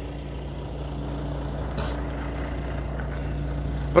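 A heavy truck's diesel engine idling, a steady low hum that holds the same pitch throughout.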